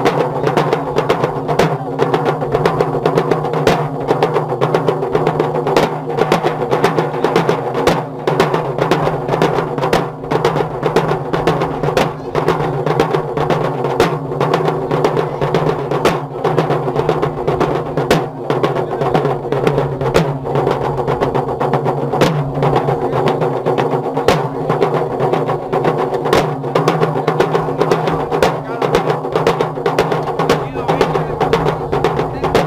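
Matachines drums: several hand-carried drums beating a fast, steady rhythm without a break.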